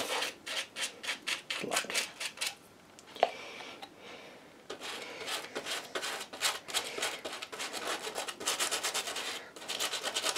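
A stiff, worn paintbrush scrubbing black poster paint onto masking tape in rapid short scratchy strokes. The strokes pause for about two seconds near the middle, broken by one sharp click, then resume.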